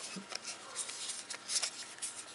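A series of light plastic clicks and scrapes as the back cover of a Nokia 100 mobile phone is slid and snapped shut over the battery, with the phone being handled in the fingers.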